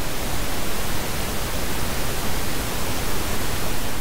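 Synthesized brown noise: a steady, even rushing hiss with no pitch, fullest in the low end.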